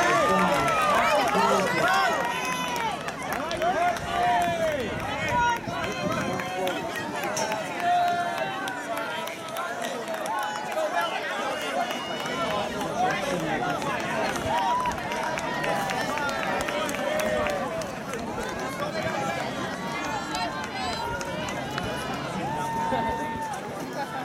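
Spectators yelling and cheering runners on, many voices overlapping, loudest in the first two seconds and then carrying on more loosely.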